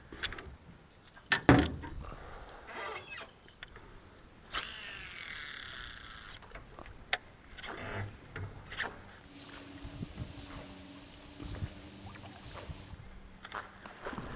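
Fishing tackle worked from an aluminium boat with a topwater popper. A sharp knock about a second and a half in is the loudest sound. A short whirring hiss follows, then scattered clicks and a faint steady hum near the end.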